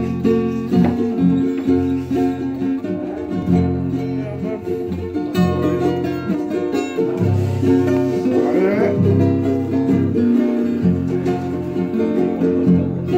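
Several acoustic guitars and ukuleles strummed together in a steady rhythm, playing a song.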